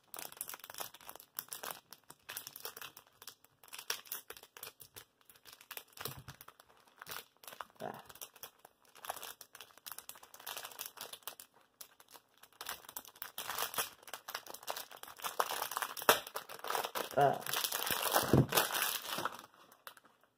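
Plastic packaging crinkling and crackling as it is handled and pulled away by hand, a quick run of small crackles that grows louder for the last several seconds.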